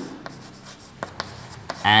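Chalk writing on a blackboard: faint scratching with a few light taps as the word is written.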